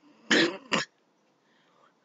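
A person coughing twice: a longer cough about a third of a second in, then a short one right after.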